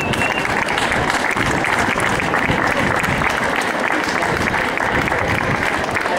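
A small crowd applauding, with dense, steady clapping.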